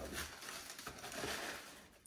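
White tissue paper rustling and crinkling continuously as a pair of sneakers is pulled out of a cardboard shoebox.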